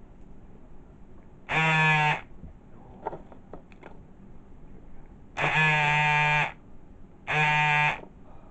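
A loud buzzing tone at one steady pitch, sounding three times with sudden starts and stops: a short blast about a second and a half in, a longer one of about a second near the middle, and a third at the end.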